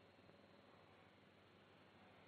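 Near silence: only the faint steady hiss of the film soundtrack.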